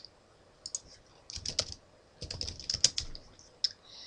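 Typing on a computer keyboard: a few short runs of key clicks as a word is entered.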